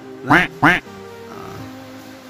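Two loud, short duck-like quacks, about a third of a second apart, each rising and falling in pitch, over steady background music.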